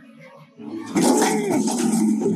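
A man's muffled, closed-mouth cries of panic, whimpering and moaning through his nose with his lips sealed shut. The cries start loud about half a second in, their pitch rising and falling.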